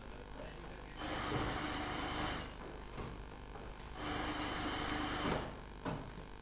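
Telephone bell ringing twice, each ring about a second and a half long and about three seconds apart, in a large theatre hall. A short knock follows just before the end.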